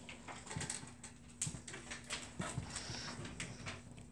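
Faint scattered taps and light rustles of a pen and paper being handled on a desk, over a steady low hum.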